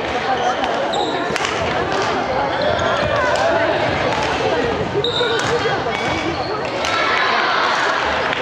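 Badminton rally: sharp racket strikes on the shuttlecock every second or two, with footfalls on a wooden gym floor, over steady chatter from spectators.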